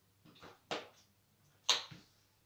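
A few short knocks and scuffs from a rider's feet and a mountain bike as he shifts his weight and sets a foot on the pedal, practising balancing the bike in place on carpet. The loudest comes near the end.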